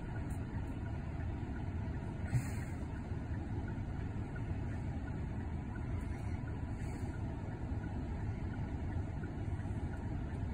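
Steady low rumble of a car heard from inside the cabin, with one brief click about two and a half seconds in.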